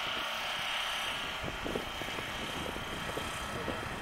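A steady distant engine drone from off-road motorcycles running on an enduro course, heard over outdoor background hiss.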